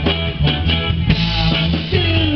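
Live band playing an instrumental passage: a drum kit keeps a steady beat under upright bass and keyboards.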